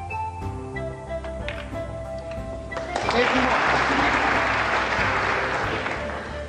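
Background music with sustained notes; about three seconds in, an audience breaks into loud applause over it, fading near the end.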